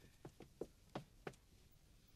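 Faint, quick footsteps on a hard floor: about five short knocks in the first second and a half.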